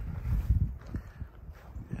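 Soft footsteps on dry grass over a low rumble of wind and handling on the microphone, with the loudest knock about half a second in.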